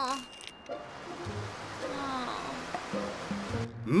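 Cartoon sound effect of a toy water gun spraying water, a steady hiss that lasts about three seconds and stops just before the end, over light background music.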